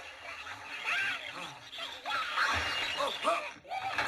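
A man grunting and crying out as he struggles, with a crash of breaking crockery in the second half.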